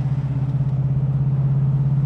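GM 502 cubic-inch big-block V8 pulling under heavy throttle, the hard acceleration that opens the cowl-induction hood flap. It gives a loud, deep, steady engine note, and the pitch climbs right at the end.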